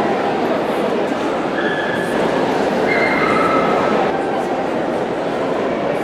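A dog whining and yipping in a few short, high, steady notes over continuous crowd chatter.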